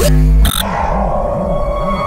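Electronic logo sting: a deep bass hit, then a sharp click about half a second in, then a held synth chord over a low pulse that warbles several times a second.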